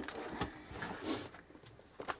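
Soft rustling and handling of paper as a stack of printed catalogues is pulled out of a cardboard box, dying away after about a second.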